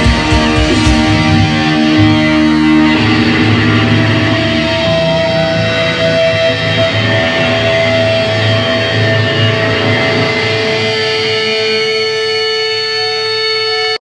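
A live metal band's distorted electric guitars playing loudly, then ringing out in long held notes from about three seconds in. The low end drops away near the end.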